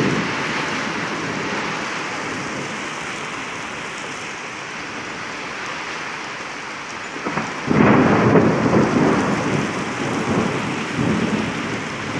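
Heavy rain with hail falling, a steady hiss. About seven and a half seconds in, a loud, deep rumble of thunder comes in and carries on to the end.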